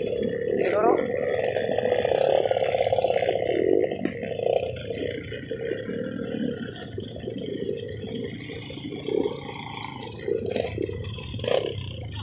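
Small trail motorcycle engines running and revving, loudest in the first few seconds and then settling lower, with riders' voices mixed in.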